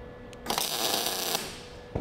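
MIG welder arc laying a short test bead on scrap steel, about a second of crackling that sounds like frying bacon, with the wire-feed welder's heat turned up: the sign that the settings are getting closer to right. A short click near the end.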